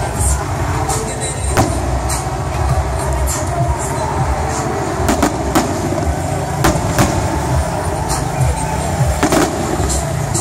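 Aerial fireworks going off in a display: irregular sharp bangs and crackles from bursting shells, several standing out loudly, over a constant low din.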